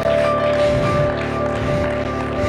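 Electronic keyboard playing soft sustained chords, the notes held steady, with a few lower notes moving underneath.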